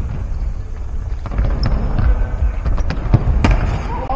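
Futsal ball kicks and players' footsteps on a wooden sports-hall floor: a run of sharp knocks in the second half, the two loudest about three seconds in, over a steady low rumble.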